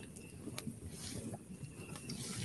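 Seaside campfire ambience: a low, continuous crackling rumble with scattered clicks, and a short thin high-pitched creak about three-quarters of the way through.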